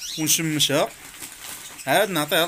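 A man's voice speaking in two short bursts, the words not made out, with a quieter pause between them.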